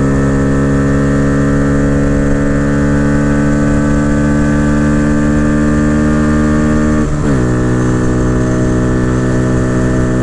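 A 2022 Honda Grom's single-cylinder engine, fitted with an aftermarket cam, intake and ECU flash, pulling hard at highway speed in fourth gear, its pitch slowly climbing. About seven seconds in the pitch drops sharply as it shifts up into fifth, then it pulls on steadily. A low rush of wind runs underneath.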